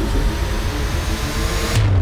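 A loud, steady rushing noise with faint music under it, which cuts off suddenly near the end.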